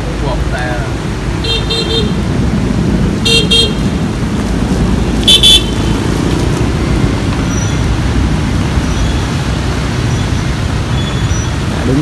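Vehicle horn honking three short times, roughly two seconds apart, the last one the loudest, over a steady rumble of traffic on a wet street.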